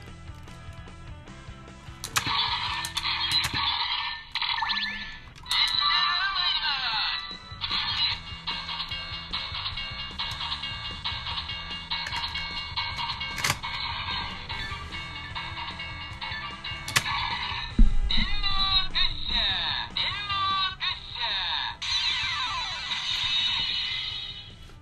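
Electronic sound effects from a ToQger (Super Sentai) train toy, played through its small, tinny speaker: a jingle-like run of tones and repeated sweeping whooshes. A sharp knock near the middle marks the toy being handled.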